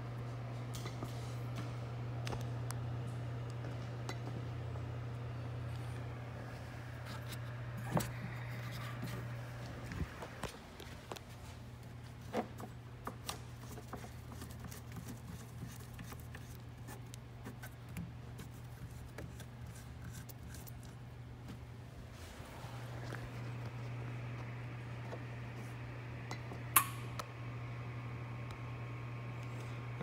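A steady low hum with scattered light clicks and taps of hands working, dipping briefly twice. Near the end comes one sharp click followed by a short ringing tone.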